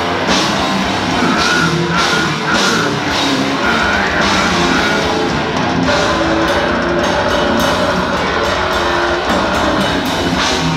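A death metal band playing live at full volume: distorted guitars, bass and a drum kit pounding without a break, the cymbals hit in quick succession over the second half.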